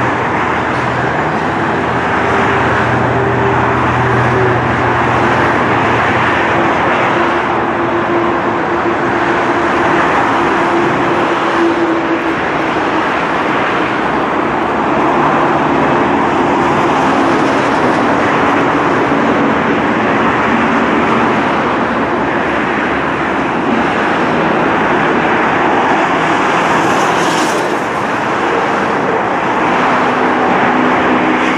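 Dense motorway traffic, with many cars, vans and lorries passing in a steady rush of engine and tyre noise. A low steady hum runs under it through roughly the first half.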